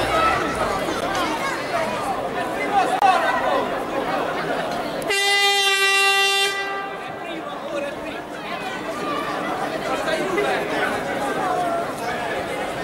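Crowd chatter, cut through about five seconds in by one steady horn blast lasting about a second and a half.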